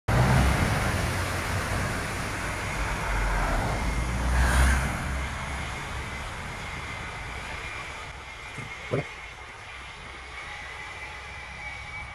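Heavy dump truck's diesel engine rumbling as it moves, loudest about four and a half seconds in and then fading away, with a faint steady high whine throughout.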